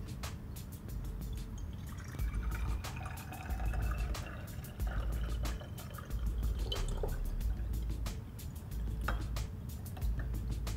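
Water poured from a glass beaker into a narrow-necked glass bottle, with a faint pitch that rises as the bottle fills toward the brim. Background music plays underneath.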